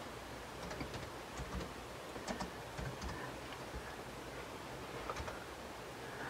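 Faint, scattered clicks of a computer keyboard as a short command is typed.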